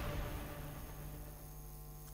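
The tail of a news channel's intro music fading away in the first half-second, leaving a faint, steady electrical mains hum.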